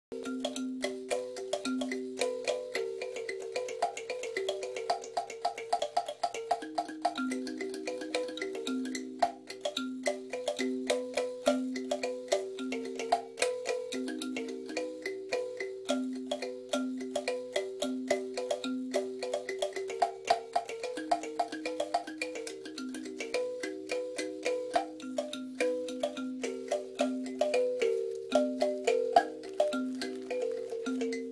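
A handmade kalimba (thumb piano) played with the thumbs: a continuous melody of plucked metal tines, each note ringing and dying away. A handful of notes in a low-middle range repeat in a gentle, even pattern of a few notes a second.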